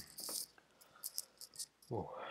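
A faint breath just after a throat-clear, then a handful of brief, sharp, high clicks, and a short hum beginning near the end.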